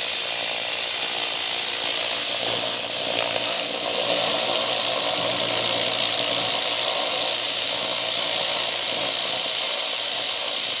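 Everlast RedSabre 301 pulsed laser cleaner firing continuously on an engine cylinder head, stripping grime from the metal with a steady, loud hiss.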